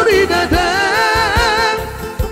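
Three male voices singing a Batak pop song in close harmony, holding a long note with vibrato, over a Yamaha PSR-SX700 arranger keyboard accompaniment with a beat.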